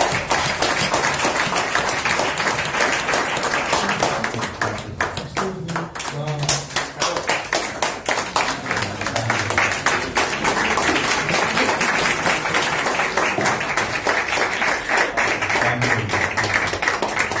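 Small audience applauding steadily after a talk, with a few voices mixed in among the clapping.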